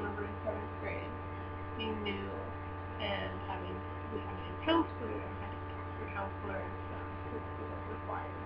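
Steady electrical hum with a buzzy stack of overtones running under the recording, with a few faint, brief sounds from the person, the clearest a little under five seconds in.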